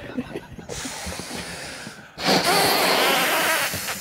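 A person blowing hard into a rubber balloon to inflate it: a faint breathy hiss at first, then about two seconds in a loud, long rush of breath.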